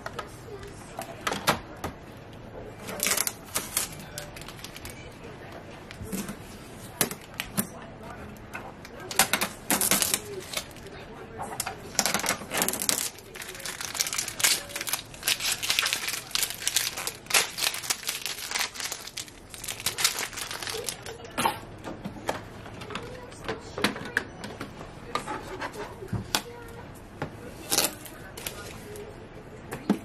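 Blue shipping tape being peeled off a new Epson EcoTank ET-8550 printer's plastic casing and crumpled into a ball: an irregular run of short rips, crackles and crinkles, with clicks of the printer's lid and panels being handled.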